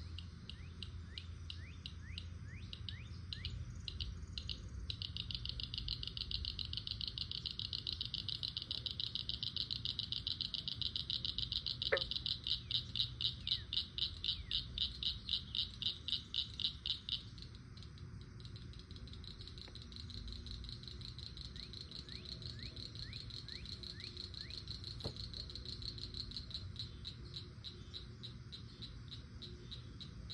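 Insects calling in a fast pulsing buzz. One loud pulsing call swells from about five seconds in and cuts off abruptly a little past halfway, leaving a steadier, quieter pulsing chorus. Short falling bird chirps sound over it now and then.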